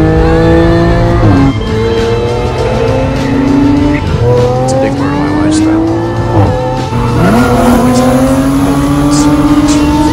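Supercharged 3.0-litre V6 of an Audi B8 S4, heard from inside the cabin, accelerating hard at full throttle. The engine note climbs steadily and then drops at each upshift, several times.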